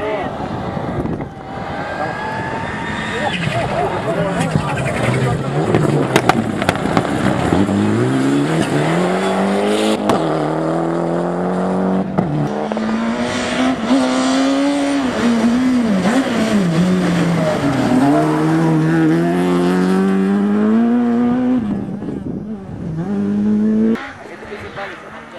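Rally cars on a gravel stage, engines revving hard. The pitch climbs through each gear and drops sharply at every gear change or lift, several times over.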